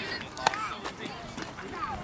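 Faint background voices of players and onlookers, with one sharp knock about half a second in.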